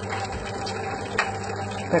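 Electric dough mixer running steadily, its hook kneading a stiff enriched dough in the metal bowl, with a single light tick about a second in.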